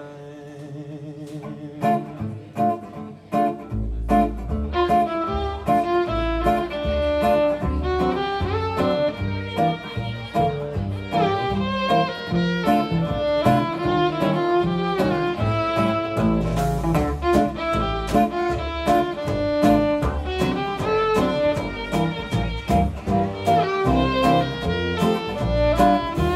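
Fiddle playing a swing melody over a small band with upright bass, drums and guitar. It starts softly, and the full band with bass and drums comes in a few seconds in.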